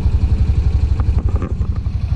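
Honda Pioneer side-by-side UTV engine running steadily with a low, fast, even pulsing, heard from inside the cab. A couple of light clicks come about halfway through.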